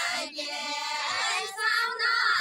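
Group of women singing a Nepali deuda folk song together, high voices holding long notes with a brief break near the middle.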